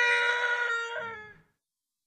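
A person's voice holding one long, high-pitched cry that wavers slightly and fades out about one and a half seconds in.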